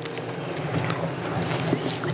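Steady hiss of room noise picked up through the chamber's microphones in a pause of speech, with a few faint clicks.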